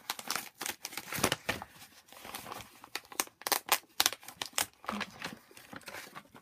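Paper wrapping crinkling and rustling as it is unfolded and handled by hand, in a run of sharp, irregular crackles that are loudest about a second in and again from about three to four and a half seconds in.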